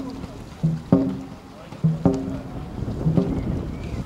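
Dragon boat crew shouting a rhythmic two-part stroke call in time with the paddling, about once a second: a short lower shout followed by a louder, sharper one, over the wash of water.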